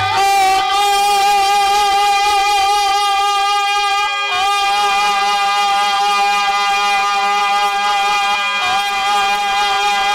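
Instrumental folk music with one melody instrument holding long, slightly wavering notes. It moves to a new note about four seconds in and again near the end.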